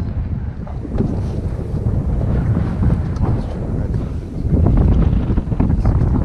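Wind buffeting the camera's microphone: a loud, gusty rumble, strongest about five seconds in.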